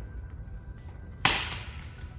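A Samsung Galaxy Note 10 Plus with a shattered glass back is dropped onto paved ground. It lands with one sharp smack a little over a second in, trailing off over about half a second, over steady background music.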